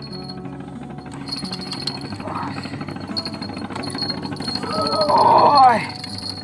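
Small boat engine running steadily at low revs. A person's drawn-out exclamation comes near the end.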